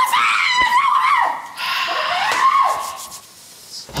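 A woman screaming in a high, wavering voice for about two and a half seconds, then falling quiet.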